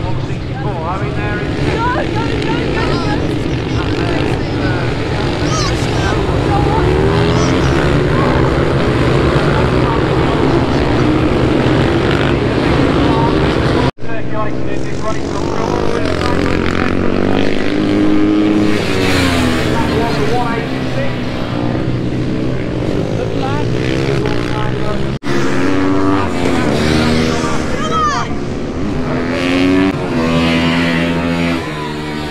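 Several supermoto motorcycles racing past, their engines revving up and down in many overlapping rising and falling notes. The sound breaks off for a moment twice.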